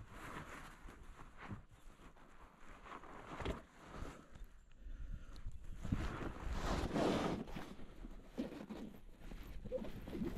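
Irregular rustling and a few light knocks from a phone and a nylon bag being handled in a kayak's cockpit, with a louder stretch of rustling about six seconds in.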